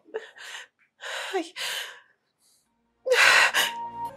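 A person's breathy gasps, several in quick succession, the loudest about three seconds in, with a short "I..." among them. Soft background music begins near the end.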